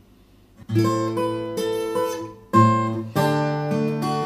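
Takamine steel-string acoustic guitar played fingerstyle. A chord starts about a second in, then breaks off and is struck again at about two and a half seconds, with the notes changing once more just after. This demonstrates the ringing chord being cut off by moving the fretting hand, which sounds bad, like a record skipping.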